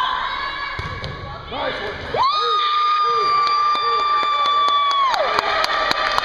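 Spectators cheering and shouting in a gymnasium as a volleyball rally is won. One long, high-pitched cheer is held for about three seconds from about two seconds in, and quick sharp claps come near the end.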